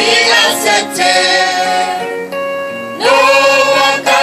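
Gospel worship song: voices singing over instrumental accompaniment, with held notes. The voices drop back about two seconds in and come back louder about a second later.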